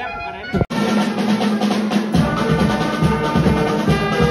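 Brass band playing: reed instruments at first, then after an abrupt cut about two-thirds of a second in, the full band with tubas, saxophones and drums, held brass notes over a steady drum beat.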